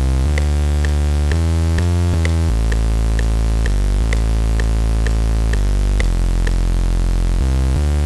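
Serum software synth playing a dirty, gritty electro house preset: a thick, bass-heavy melody of held notes stepping from pitch to pitch, played back from the piano roll. A short click sounds on every beat, about twice a second.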